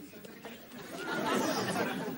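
Studio audience laughing and murmuring, swelling about a second in.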